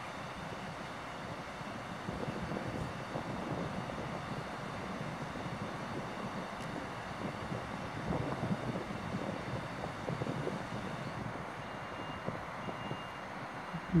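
Steady distant vehicle rumble with a faint high tone sounding twice near the end.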